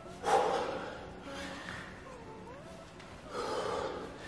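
A man's heavy breaths from exertion during jump squats: three forceful breaths out, the first and loudest right at the start, a weaker one a little over a second in, and another near the end.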